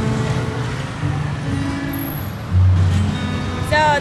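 City street traffic: cars and motorbikes running by, with a louder low engine rumble starting about two and a half seconds in.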